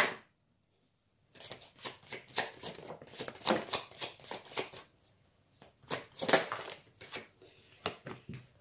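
Tarot cards being shuffled and dealt onto a cloth-covered table: a run of quick papery flicks and snaps, starting about a second in, with a short pause about five seconds in.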